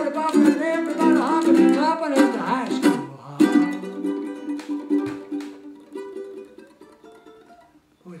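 Ukulele strummed at the close of a rock-and-roll song, with a man's voice still singing over the first three seconds. After that, a few final strummed chords ring on and fade out toward the end.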